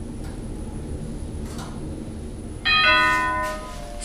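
ThyssenKrupp elevator car running with a low steady hum, then about two and a half seconds in its arrival gong sounds: a bell-like chime that rings out and fades over about a second, signalling that the car has reached its floor.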